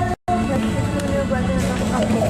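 A person's voice talking indistinctly over a steady low background hum. Shortly after the start the sound cuts out completely for a split second, as at an edit, then resumes.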